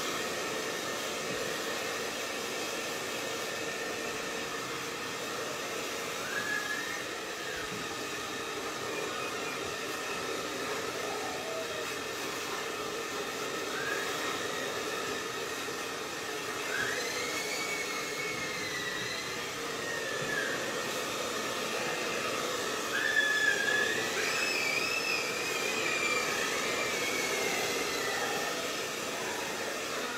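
Handheld hair dryer blowing steadily, with a constant motor hum under the rush of air, switched off right at the end.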